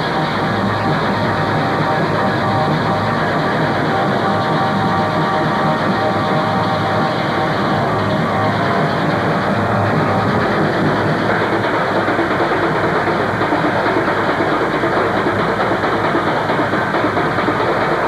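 Live industrial music: a dense, unbroken din of metal objects played as percussion together with other instruments, holding a steady loudness throughout.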